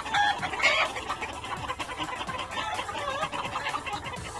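Gamefowl pullets clucking: two louder short calls in the first second, then softer clucks around three seconds in.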